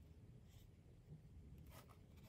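Faint strokes of a fine paintbrush laying gouache onto paper, two soft brushy scrapes, one about half a second in and one near the end, over a low room hum.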